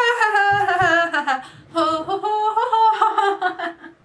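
A high voice humming a slow wordless tune in long held notes that slide up and down, breaking briefly twice.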